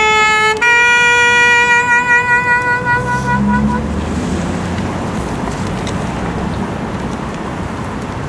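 Saxophone playing a short note, then a long held note with slight vibrato that stops about four seconds in. Steady street traffic noise follows.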